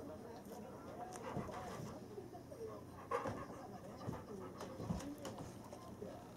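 Bernese mountain dog whining softly in short rising-and-falling whines, begging for a mandarin orange, with a few sharp clicks among them.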